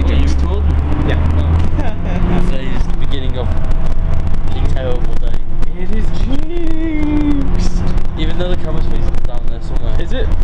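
Bus cabin with the engine's low rumble, heaviest in the first couple of seconds, under people talking.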